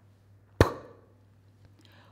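A woman voicing the isolated consonant sound /p/: one short, sharp puff of breath about half a second in, with no vowel after it.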